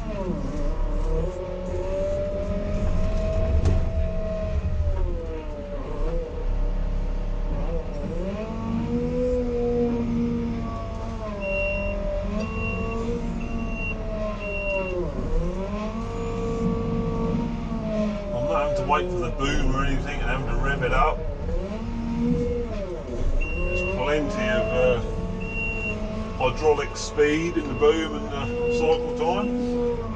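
Merlo 42.7 Turbo Farmer telehandler's diesel engine heard from inside the cab, its revs rising and falling again and again as the machine is driven and manoeuvred. A reversing beeper sounds in short runs of evenly spaced beeps a few times, and there are spells of clattering about two-thirds of the way through and near the end.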